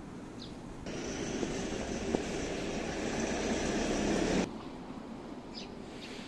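Chain degreaser poured from a bottle into the reservoir of a bicycle chain-cleaning tool, filling it: a steady pour lasting about three and a half seconds that grows a little louder, then stops abruptly.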